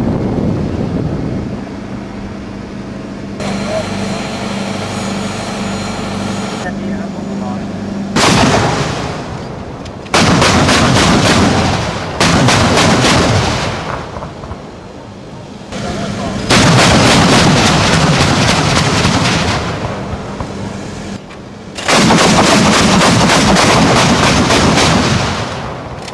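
Towed twin-barrel anti-aircraft guns firing in rapid automatic bursts. There are five bursts of two to three seconds each, the first about eight seconds in.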